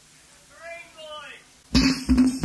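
Short pause holding a brief voice call, then near the end the band's next song starts abruptly: sharp drum-machine beats with electric organ chords.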